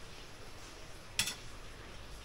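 A single sharp metallic clink about a second in, as the heated steel motorcycle fork spring is set down end-first on a steel disc, over a faint steady low hum.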